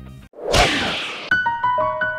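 Background music cuts out, then a loud swoosh sound effect about half a second in, followed by a run of held, chiming keyboard notes starting about a second later: an outro jingle.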